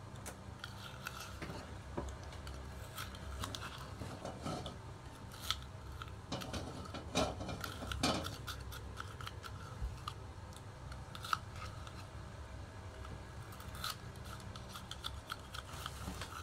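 Small scissors snipping and paper being handled: irregular small clicks, snips and rubs, with a few louder ones about seven to eight seconds in.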